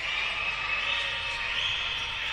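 Steady background din of an indoor basketball court during play, an even hiss-like noise with no clear ball bounces.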